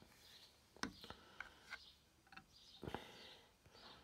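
Near silence with a few faint clicks and a soft knock just before three seconds in: a steel washer being handled and set down on a wooden board.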